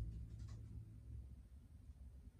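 Faint vinyl surface noise and low rumble from the stylus tracking the quiet groove after the song has faded out, with a brief soft scratchy sound about half a second in.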